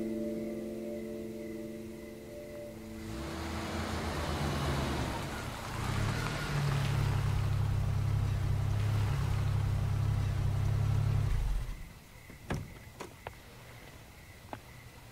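A car drives up, its engine running with a low steady hum, then the engine cuts off suddenly about three-quarters of the way through. A few sharp clicks follow.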